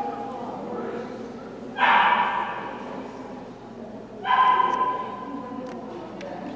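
German Shepherd giving two loud barks, about two and a half seconds apart, each trailing off in the hall's echo.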